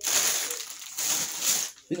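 Plastic packaging rustling as it is handled, a noisy crinkle that breaks off briefly near the end.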